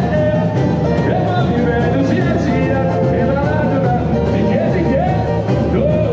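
Live samba band playing with a singer, loud and continuous.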